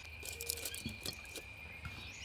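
A faint, steady high-pitched insect trill, like a cricket, with a quick run of small, sharp clicks and ticks through the first second or so.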